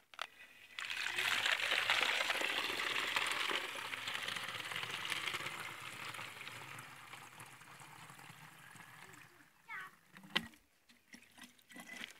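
Water running from a tap into a plastic soda bottle: a steady rush that starts about a second in, is loudest for the first few seconds and slowly dies away by about nine seconds. The water is the clear output of a bio-sand filter. A few short knocks follow near the end.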